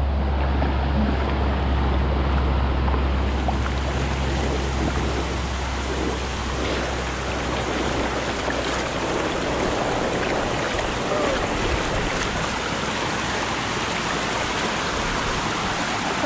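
Rushing, shallow river water pouring over a rock slide, with splashing close by as a child slides down on an inflatable float and kicks at the water. A strong low rumble sits under it for the first few seconds, then fades.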